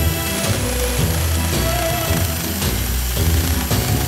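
A power drill running steadily with a Forstner bit boring into engineered wood, its motor making a steady high whine, mixed with background music.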